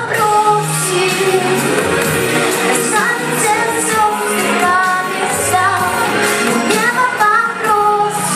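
A woman singing a song into a handheld microphone over backing music with a bass line and a steady beat.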